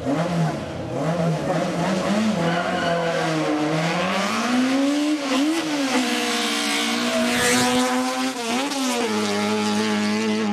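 Race car engine revving in short bursts, then pulling hard up through the gears: the pitch climbs, drops sharply at each shift, and settles to a steady note near the end.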